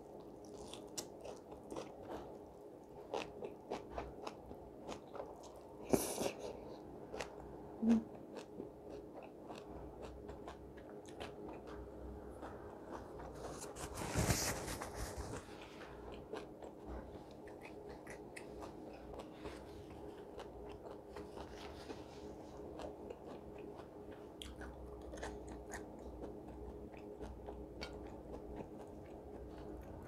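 Close-miked chewing and biting, with soft wet mouth clicks and small crunches, as a mouthful of chewy, crunchy food is eaten by hand. A louder burst comes about 14 seconds in.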